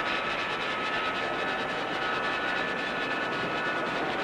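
Jet aircraft engines running: a steady rushing noise with a high whine.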